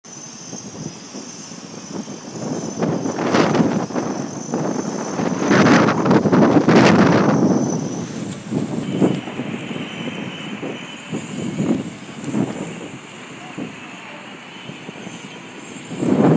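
Outdoor city ambience: traffic noise that swells from about three to eight seconds in and then settles back, with faint voices.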